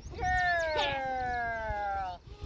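A corgi giving one long, whining yowl that slides slowly down in pitch over nearly two seconds.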